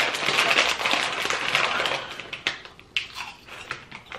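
A foil crisp packet crinkling as it is handled, a dense crackle for about two seconds, then quieter with a few scattered crackles and clicks.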